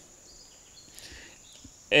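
Faint outdoor background in a pause between speech, with a faint brief sound about a second in.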